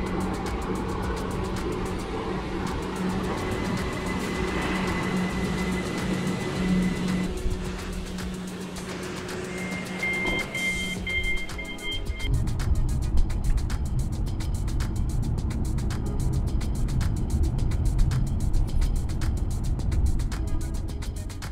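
Background music over an electric train's hum as it pulls into an underground platform. About ten seconds in, the train's door-open button beeps in two tones for a couple of seconds. From about twelve seconds there is the low rumble of a car driving on a motorway, heard from inside.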